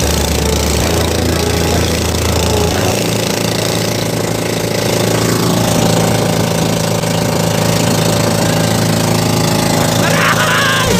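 Outrigger pumpboat's engine running steadily at speed under way, over a constant rush of noise.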